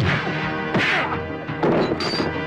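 Fistfight sound effects: three hard punch-and-smash hits over dramatic background music.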